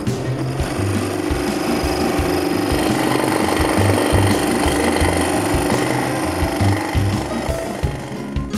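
Scroll saw running and cutting an inside curve through a thin wooden workpiece, its blade going steadily up and down; it starts at the beginning and drops away just before the end. Background music plays underneath.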